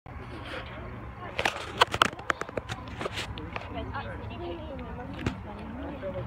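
People's voices talking, with a quick run of sharp clicks and knocks in the first half and a steady low rumble underneath.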